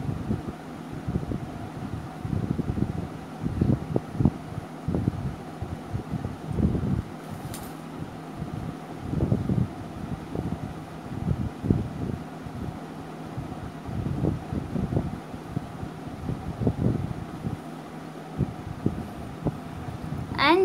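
Uneven low rubbing and knocking from a hand and pencil moving over a sketchbook page close to the microphone, muffled like handling noise on the mic.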